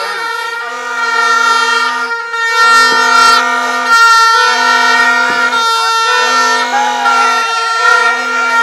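Several plastic vuvuzela-style horns blown together in a loud, steady blare: one holds a continuous note while a lower horn sounds in repeated blasts of about a second each.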